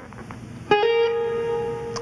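A single guitar note plucked about two-thirds of a second in, bent quickly up in pitch and then held ringing: a blues string bend.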